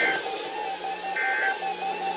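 Weather radios receiving the NOAA Required Weekly Test: short bursts of the SAME digital header's two-tone data screech, three times about a second apart. A steady pulsing tone and radio hiss run underneath.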